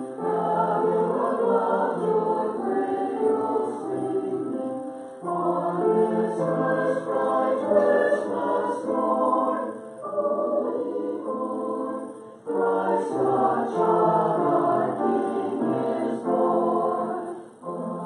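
Church choir singing in several voice parts, in sustained phrases that pause briefly about five, ten and twelve and a half seconds in and again near the end.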